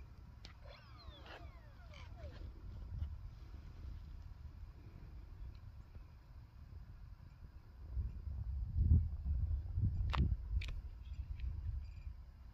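Wind buffeting the microphone, a low rumble that swells about eight seconds in and stays strong for a few seconds. It has a sharp knock near ten seconds. Near the start, a faint whine falls in pitch.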